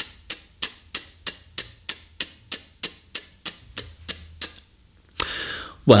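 Beatboxed closed hi-hat {t}: an unaspirated, outward ejective click made with the tip of the tongue against the front teeth, repeated in an even run of about fifteen crisp ticks at about three a second. The run stops about four and a half seconds in and is followed by a short breath.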